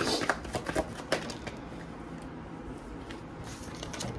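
Tarot cards being shuffled by hand: a quick run of card clicks and flutters in the first second or so, then softer rustling with a few taps.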